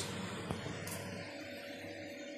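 Quiet kitchen background with a faint steady hum and one light click about half a second in.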